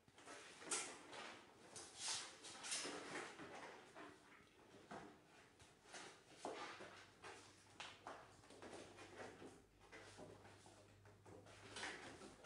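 Faint rustling and handling noises of sheet music being sorted and opened, in short irregular scrapes, with a faint low hum coming in about halfway through.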